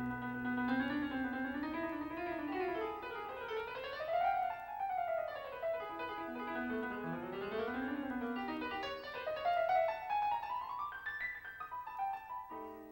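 Solo keyboard playing a piano sound: fast runs sweeping up and down the keyboard. A low held note dies away in the first second or so.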